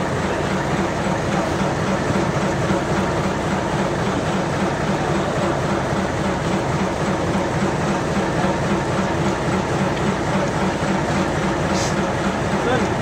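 A fishing boat's engine running steadily: a constant low drone with an even hiss over it.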